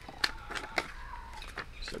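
Paper instruction manuals being handled and unfolded, rustling with a few sharp crackles.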